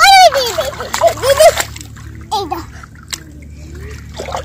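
A young child calls out in a high voice over the first second and a half, with a shorter call about two and a half seconds in. Hands splash and stir shallow muddy water while grabbing for fish.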